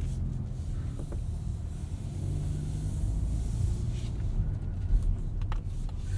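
The 2.5-litre turbocharged inline-four of a 2023 Mazda CX-50, heard from inside the cabin, running as a steady low hum while the car drives off at low speed. A few faint clicks near the end.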